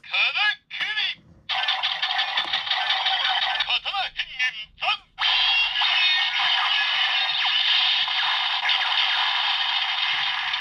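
Karakuri Hengen toy weapon playing its sword-mode finishing-attack sound sequence through its small built-in speaker. Short electronic calls come first, then a long effect, a few brief bursts, and a second long sustained effect from about five seconds in that fades just after the end.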